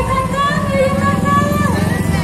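Motorcycle engines running as they ride past close by, over amplified music and a voice played through a loudspeaker.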